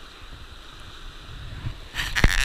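River water running over rocks, a steady even hiss, with a low rumble of wind buffeting the microphone.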